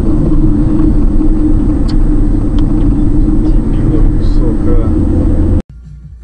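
Steady, loud road and engine rumble inside a moving car, as picked up by a dashcam microphone at highway speed. It cuts off suddenly near the end.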